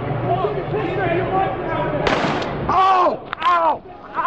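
Crowd voices murmur, then a single loud gunshot cracks about two seconds in. Right after it a man gives two loud cries, each falling in pitch: the cries of someone who has just been hit.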